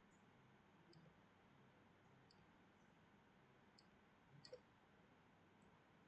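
Near silence broken by a handful of faint computer mouse clicks, the clearest about four and a half seconds in.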